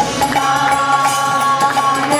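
Kirtan: a woman's voice chanting a devotional mantra over a harmonium's sustained reed chords.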